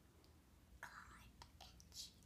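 A young girl whispering faintly, with a few small mouth clicks.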